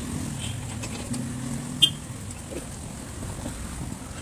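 Street traffic: a motor vehicle's engine running close by, a steady low hum that drops off after about two seconds. A single short high-pitched sound comes about two seconds in.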